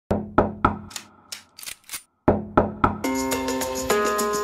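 Knocking in two sets of three raps, with a few lighter clicks and a short pause between the sets. About three seconds in, the dancehall track starts with a steady beat and held tones.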